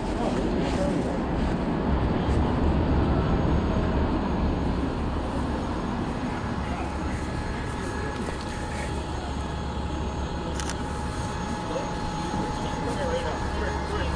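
City street traffic: a steady low rumble of passing vehicles, with indistinct voices of passersby. A faint steady whine joins about halfway through.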